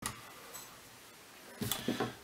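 Faint room tone, then a couple of short knocks near the end: a screwdriver handled on a wooden tabletop.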